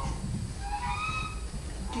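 Barnyard fowl calling, two short high-pitched calls about halfway through, over a low steady rumble of room noise.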